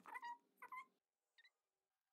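Faint mewing calls, like a cat's meows: two short calls close together, then a brief third about a second and a half in, with near silence between.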